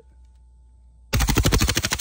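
Integrally suppressed 9mm HK MP5SD (TPM Outfitters build) firing a rapid full-auto burst that starts about a second in, about a dozen shots a second, the magazine being dumped. It fires 124-grain NATO ammunition through a ported barrel meant to bleed the rounds down to subsonic.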